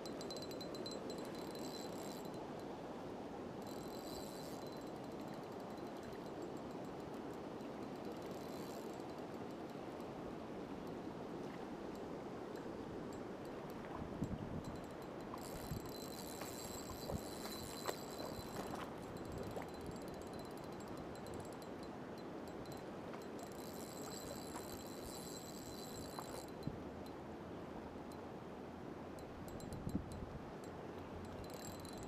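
River water rushing steadily over a shallow grassy riffle. Several times a high, ringing chirr comes and goes over it, and a few light knocks sound about halfway through.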